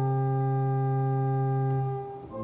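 Church organ holding one steady chord on pure, flute-like stops, with a strong bass note under it; the chord is released near the end.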